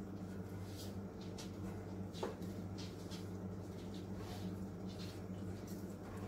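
Basting brush swept around the buttered sides of a cast iron skillet, a few soft, scratchy swishes at uneven intervals over a steady low hum.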